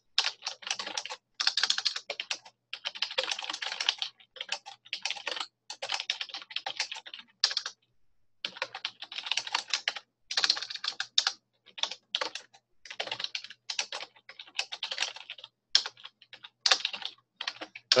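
Typing on a computer keyboard in quick runs of keystrokes, with short breaks between them and one longer pause about eight seconds in.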